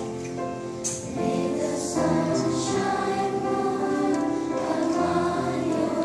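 Children's choir singing a slow song, holding long notes of about a second each.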